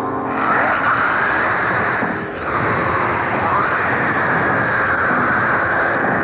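Film soundtrack from a 1970s monster fight scene: a continuous, dense, noisy sound with slow rising and falling sweeps.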